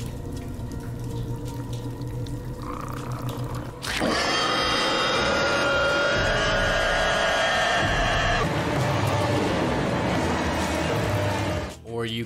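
Dark horror-film score. A low, steady drone lasts about four seconds, then a sudden loud swell of many held, dissonant tones continues until near the end.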